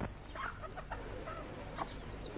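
Chickens clucking in a few short, quiet calls, with faint high chirps of small birds.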